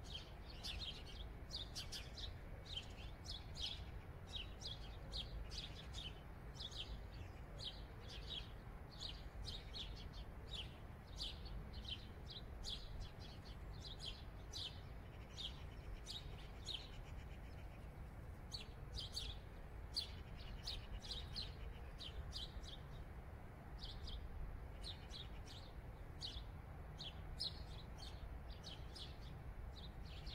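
Small birds chirping: a steady run of short, high chirps, a few each second, over a faint low rumble.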